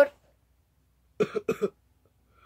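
A child coughing three times in quick succession, a little over a second in.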